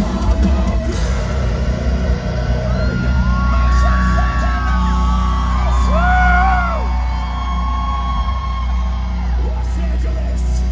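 Metalcore band playing live through a concert PA, filmed from the crowd: a heavy, steady low end with a few drum hits in the first second. From about three seconds in, long held vocal notes rise and bend over it.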